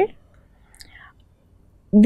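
A short pause in a woman's speech: low room tone with a faint breathy sound about half a second to a second in, and her voice starts again at the very end.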